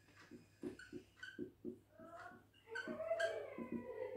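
Marker pen writing on a whiteboard: a run of quick faint strokes with short squeaks, and a longer wavering squeak in the last second or so.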